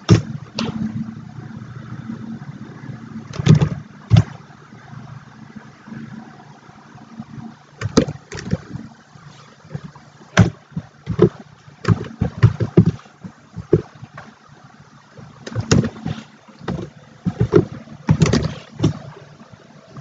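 Computer keyboard keys and mouse buttons clicking at an irregular pace, singly and in short runs, with a low hum in the first few seconds.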